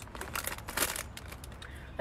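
Plastic candy wrapper crinkling as it is handled, a run of short, irregular rustles and crackles.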